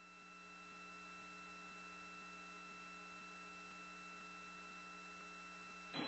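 Steady electrical hum with several fixed tones over a faint hiss, from an open launch-control communications line, swelling slightly in the first second.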